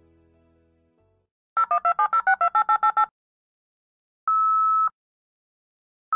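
Dial-up modem dialing out to connect to the internet: a quick run of about eleven touch-tone beeps, then two short identical steady beeps about two seconds apart, the modem's calling tone. Soft music fades out just before the dialing.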